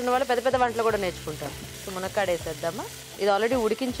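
A woman talking over food sizzling as it fries in a pan, stirred with a wooden spatula.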